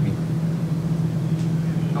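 A steady low hum in the press room, with no change through the pause between speakers.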